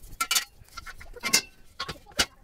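A few sharp, irregular metal clicks and clinks as the tubular steel parts of a gothic-arch garden arbor are handled and taken apart.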